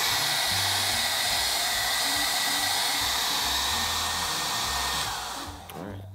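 Handheld hair dryer blowing steadily over a freshly brushed acrylic paint wash to speed its drying, then switched off near the end.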